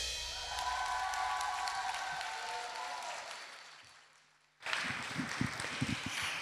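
Audience applause as a heavy-metal song ends, fading away to silence about four seconds in. A few low knocks follow near the end.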